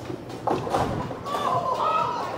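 Bowling alley background: faint voices and music over a low, steady din, with a soft knock about half a second in.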